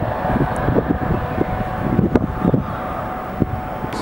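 Wind buffeting the microphone in irregular gusts over a faint steady hum, with a single sharp click about two seconds in.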